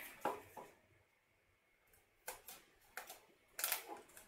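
Masking tape and paper being handled: a few short, faint crackles and rustles as strips of tape are pressed onto a paper ring around a CD, the loudest a little before the end.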